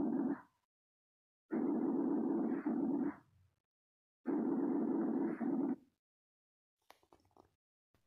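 Lung breath sounds heard through a stethoscope on the back of the chest: low, muffled rushing breaths, one ending about half a second in and two more lasting about a second and a half each, separated by silence. A few faint ticks come near the end.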